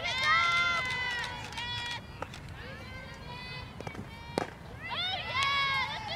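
Players' high-pitched voices calling out long, drawn-out cheers and chants during a softball game, with one sharp smack about four and a half seconds in.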